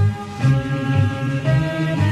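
Military band music: held chords over a low bass line that moves in steps about twice a second.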